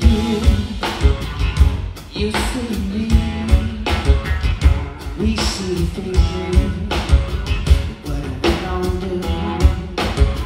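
Live rock band playing a steady groove: drum kit with regular hits, acoustic guitar and electric guitar.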